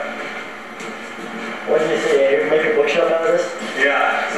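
Indistinct voices talking, quieter for the first second and a half and then louder.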